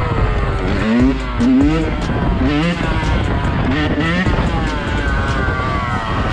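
Yamaha dirt bike engine revved in a string of short rising blips, four or five of them, over steady wind rush on the microphone.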